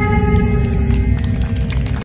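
Music holding a sustained chord: several steady held tones over a deep low rumble, with no beat.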